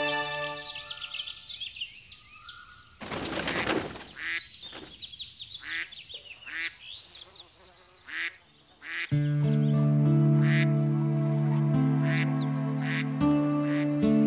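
Soundtrack music fades out at the start, leaving birds chirping and ducks quacking, with a brief rushing noise about three seconds in. Soundtrack music with long held notes comes back in about nine seconds in and is the loudest part.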